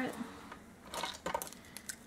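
Light clicks and rustles of hands handling craft materials on a tabletop: a cluster about a second in, and a few more near the end.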